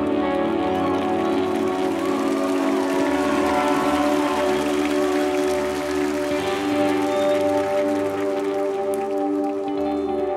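Live band's ambient music: steady held chords with no beat, after the deep bass drops out right at the start.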